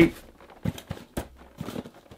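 Cardboard shipping box of boxed Funko Pop figures being handled and shaken, with a few short, irregular knocks as the inner boxes shift inside.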